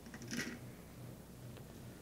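Quiet room tone with a steady faint low hum and one brief, faint soft noise about half a second in.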